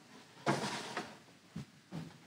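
Mounted photo prints being handled on a display stand: a brief sliding rustle of mat board about half a second in, then a few short soft knocks as a print is set down.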